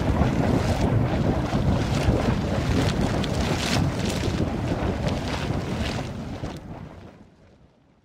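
Intro sound effect of rock crumbling: a loud, noisy rumble with crackles and rattles running through it, fading away over the last couple of seconds.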